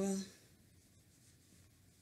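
The end of a spoken word, then near silence with a faint rustle of fabric as a hand pats and smooths a silicone doll's clothing.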